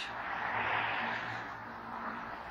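A passing road vehicle: a broad rush of noise that swells about half a second in and fades away by the end.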